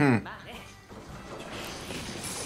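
A short, loud exclamation from the anime's soundtrack, its pitch falling steeply, at the very start; quieter soundtrack sound with music follows.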